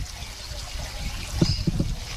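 Low, steady rumble of wind on the microphone, with a few short soft knocks about one and a half seconds in.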